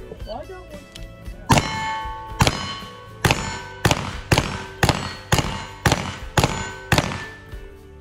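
Ten shots from a pair of Ruger New Model Single-Six .32 H&R revolvers fired two-handed with black-powder loads. The first few come about a second apart, then they speed up to about two a second, over background music.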